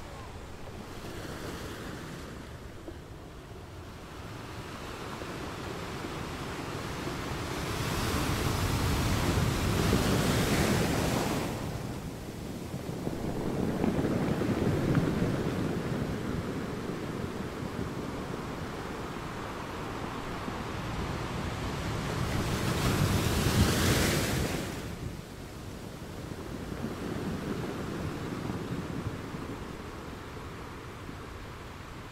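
Ocean surf breaking on a rocky shore, a hissing roar that swells and recedes in waves. The wash builds to a long peak about a third of the way in and comes back loudest a little over three-quarters through, before easing off.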